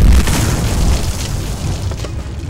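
Explosion sound effect: a loud, deep boom, strongest at the start and slowly fading.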